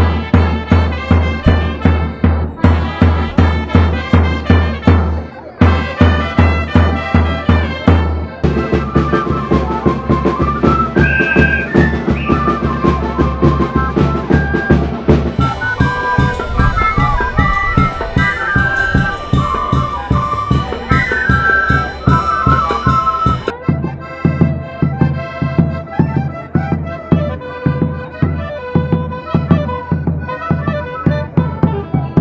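Traditional Andean festival dance music from a band, with a steady drum beat under a wind-instrument melody. The music breaks off and changes abruptly several times.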